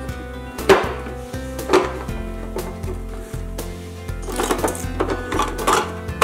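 Wooden toy train track pieces knocking and clacking against each other and the table as they are pushed together: a few sharp knocks, two in the first two seconds and a cluster near the end. Steady background music plays underneath.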